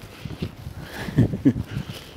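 A man's short wordless vocal sounds and breaths, a few spaced about half a second apart, while he walks.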